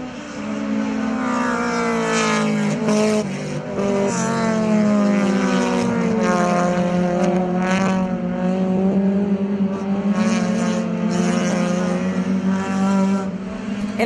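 Several touring race car engines passing one after another at speed, the pitch of each falling as it goes by.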